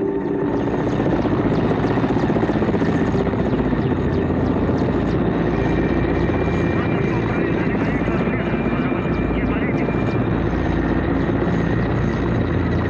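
Helicopter engine and rotor noise heard from inside the cabin, loud and steady throughout.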